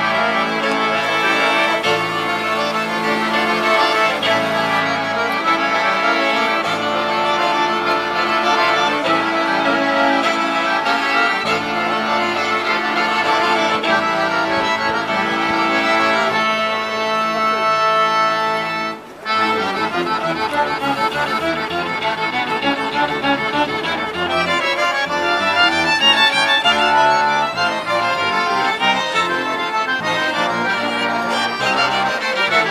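Live street music led by accordions, with violin, a large balalaika and a tuba in the ensemble. The music cuts out briefly about two-thirds of the way through, then goes on with a livelier rhythm.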